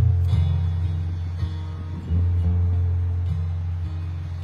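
Acoustic guitar strummed alone in an instrumental passage between sung lines, chords ringing with deep bass notes. A new chord is struck about two seconds in and another shortly after three seconds.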